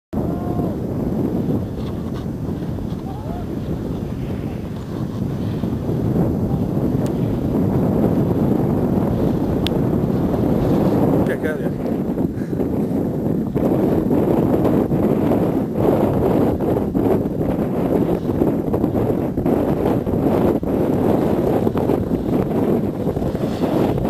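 Wind blowing across the camera microphone: a loud, steady low rush that gets a little louder about six seconds in.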